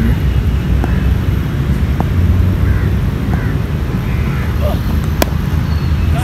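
Sharp crack of a cricket bat striking the ball about five seconds in, over a constant low outdoor rumble with faint distant calls from the field.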